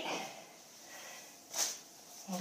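A short, sharp breath close to a headset microphone, about one and a half seconds in, in an otherwise quiet room.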